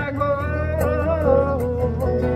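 Man singing, holding a long note at the end of a line over strummed acoustic guitar, with a steady low bass note underneath.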